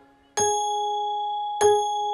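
A bell-like ding struck twice, about a second apart, the first a third of a second in, each ringing on at one steady pitch: a cartoon alarm-clock bell sound effect.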